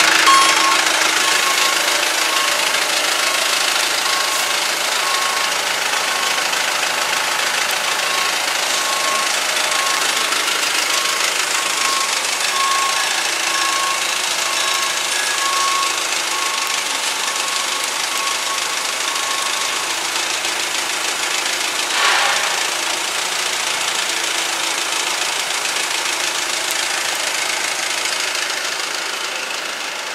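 Yale forklift's engine running steadily while it holds the load in position, with a faint on-and-off tone in the first half and a short, sharp noise about 22 seconds in.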